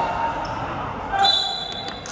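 Basketball sneakers squeaking on the hard court floor as players scramble under the basket, with a ball bouncing.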